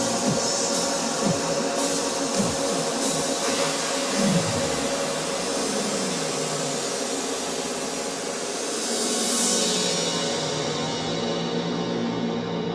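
Melodic techno mix: deep thumps falling in pitch stop about four seconds in, leaving held synth tones, with a noise sweep swelling around nine seconds.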